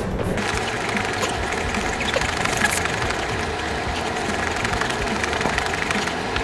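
Liquid starter wort sloshing and churning as a one-gallon jug is shaken hard and without pause, a dense, even rushing noise. The shaking foams and oxygenates the wort before the yeast is pitched.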